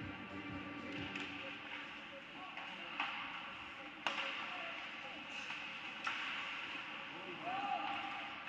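Ice hockey sticks striking the puck: three sharp cracks, about three, four and six seconds in, the middle one the loudest, over a steady hiss of skates on the ice and voices in the rink.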